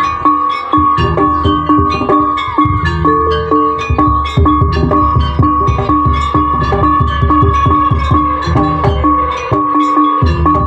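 Jaranan gamelan music: quick, evenly repeated strikes on tuned metal gong-chimes over drumming, with a steady held high tone running above.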